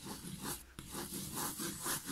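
White wax crayon rubbed on its side across paper in repeated strokes, a scratchy rub about three strokes a second.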